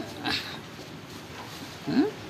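Domestic cat vocalising: a short breathy call about a third of a second in, then a louder, short rising meow near the end.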